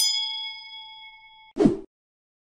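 Subscribe-button animation sound effects: a mouse click on the notification bell, then a bright bell ding that rings and fades for about a second and a half before cutting off. A short, louder whoosh falls in pitch near the end.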